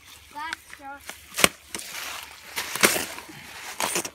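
A brief voice sound, then two sharp knocks of hard objects: the louder one about a second and a half in, the other near three seconds.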